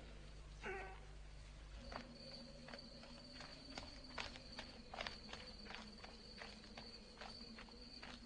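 Light, irregular footsteps over a steady high insect-like trill that begins about two seconds in.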